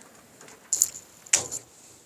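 Aviation tin snips cutting galvanized steel wire mesh: two short, sharp metallic snaps a little under a second apart as the blades shear through the wires.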